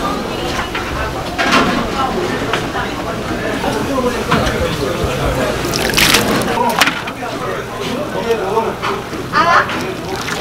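Water sloshing in a large pot of steaming noodle water as a mesh strainer is worked through it, with a few brief splashes.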